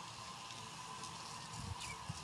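Quiet outdoor background between demonstrations: a faint steady high hum and a short falling chirp near the end, with a few soft low thuds.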